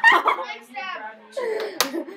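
A single sharp clack near the end as two thin stick swords strike each other in a play fight, over girls' voices.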